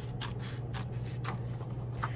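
Scissors snipping through folded construction paper in a quick run of short cuts, several a second, over a steady low hum.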